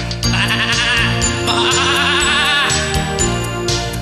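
A sheep bleating: two long, quavering baas over backing music.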